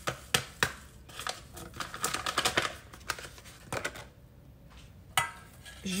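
Scattered light clicks and taps, with some crinkling, as a sachet of flan powder is emptied into a stainless steel saucepan with a whisk resting in it.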